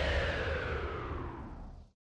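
The reverberating tail of the closing music sting, fading steadily after its final hits and cutting off just before the end.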